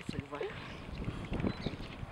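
Wind buffeting the microphone with an uneven low rumble, and a short murmur of voice in the first half second.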